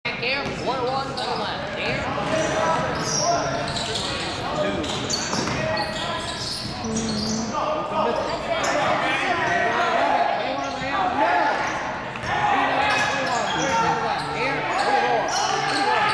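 Basketball bouncing on a hardwood gym floor during play, with many short knocks among the players' voices and calls in a large, reverberant gymnasium.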